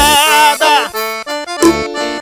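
Forró music: an accordion plays a short run of held notes while the bass drum drops out for a moment.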